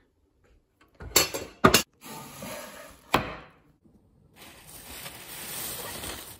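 Wooden chopping board pulled from a dish rack and laid down: a few sharp knocks and clatters of wood on hard surfaces in the first half. Then plastic produce bag crinkling steadily near the end.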